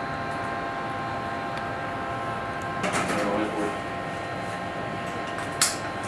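Steady electronic hum with several fixed tones from launch-control console equipment and ventilation in a small room. A brief murmur of voice comes about halfway through, and a single sharp click near the end.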